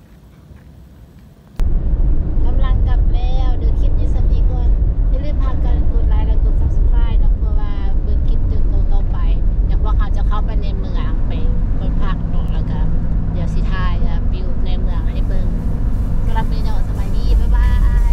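Car interior road noise, a loud steady low rumble of a vehicle driving, starting suddenly about one and a half seconds in, with voices talking over it.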